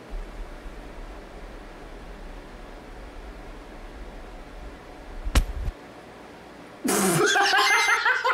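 A man bursts into loud laughter about seven seconds in, after several seconds of low rumble that ends in a sharp click.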